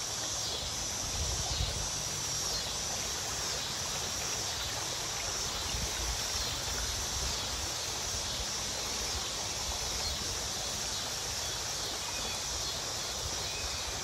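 Steady rushing of a creek's water below a footbridge, an even noise with no breaks, over a low fluctuating wind rumble on the microphone. A steady high insect drone runs through it.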